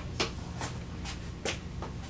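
Footsteps on a hard floor, about two a second, over a low steady room hum.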